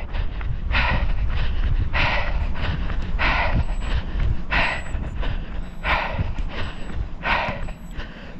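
A person breathing hard from exertion, one loud noisy breath about every 1.3 seconds, over a steady low rumble on the microphone.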